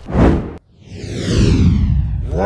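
Edited-in whoosh sound effects: a short swoosh at the start, then a brief gap and a longer sweep that falls steadily in pitch.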